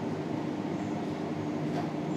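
Steady background hum and hiss of room noise, with no distinct events.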